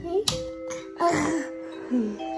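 A wall light switch clicking off about a quarter-second in, over soft music playing, with a brief voice around a second in.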